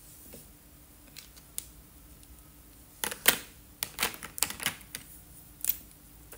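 Sharp plastic clicks and clacks of felt-tip markers being handled while switching colours, set down among the plastic tray of markers and another picked up. A couple of single clicks come first, then a quick run of clicks around the middle, the loudest about three seconds in.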